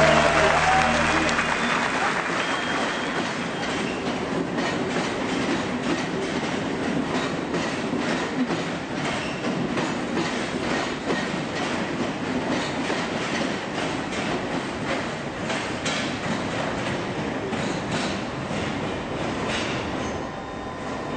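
London Underground Circle Line train running, its wheels clicking and clattering over the rails in an irregular stream.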